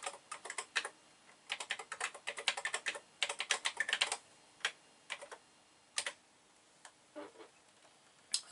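A TI-99/4A computer keyboard being typed in quick runs of key clicks. After about four seconds the runs thin to a few single key presses.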